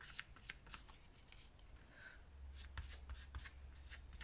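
Faint rustling and light ticking of torn deli paper being handled and laid down, with a flat brush dabbing matte gel medium over it, over a steady low hum.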